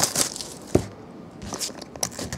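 Plastic shrink wrap on a cardboard box being slit with a utility knife and torn away, crinkling, with one sharp tick a little under a second in.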